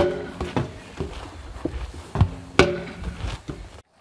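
Sledgehammer striking a large tractor tyre: dull thuds, one at the start and two more a little over two seconds in, about half a second apart.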